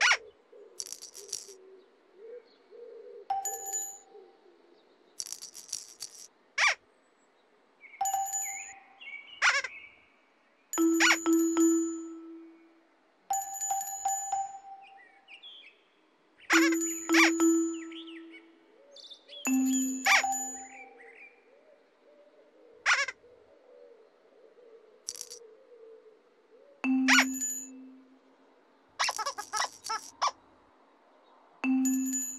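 Musical stepping stones sounding a bright chiming note as each one is stepped on: a string of separate notes at different pitches, one every second or two, with birds chirping in the background.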